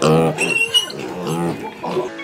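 Mini pig making several short pitched calls that rise and fall, sounding like a Minecraft piglin.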